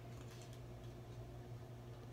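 Faint room tone: a steady low hum with a few soft clicks about half a second in.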